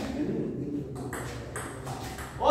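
Table tennis ball being struck by rubber paddles and bouncing on the table in a rally: sharp clicks about half a second apart, starting about a second in.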